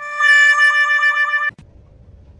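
Sad-trombone comedy sound effect: the last, long low note of the falling 'wah-wah-wah-wahhh', held with a wobble. It cuts off sharply about one and a half seconds in.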